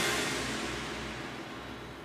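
Tail of electronic drum-and-bass background music fading out after its last beat, a wash of sound dying away steadily with no further beats.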